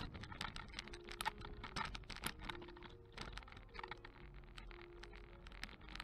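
Faint, irregular clicking and rattling, with a few brief faint hums: the camera rig jostling as it rolls along the street.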